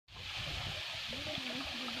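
Shallow lake water pouring steadily over a low concrete causeway, a continuous rushing.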